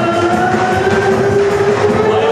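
Loud live band music at a Turkish celebration: a long held melody note slowly sliding upward over a dense, steady accompaniment.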